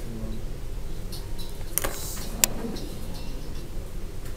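Pen and paper being handled: a few faint clicks and light taps, the sharpest about two and a half seconds in, over a steady low hum.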